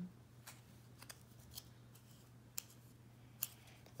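Faint, scattered small clicks and snaps of fingers picking at and peeling the paper backing off a foam sticker piece, about five in all, the two clearest in the second half.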